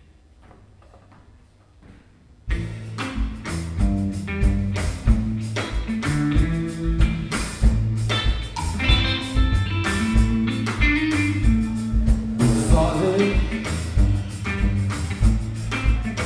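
A live band starts its song about two and a half seconds in, after a short hush: drum kit, electric bass and electric guitar playing together with a steady beat.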